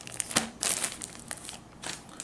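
Plastic wrap around a pack of toilet paper rolls crinkling in irregular bursts as a ruler is shifted and laid across it, loudest a little over half a second in and once more near the end.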